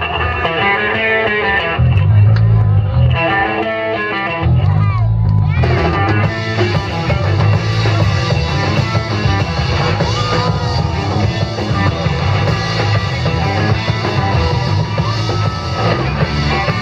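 Live garage rock band playing loud: electric guitars, bass, keyboard and drums, the sound filling out with cymbals about six seconds in.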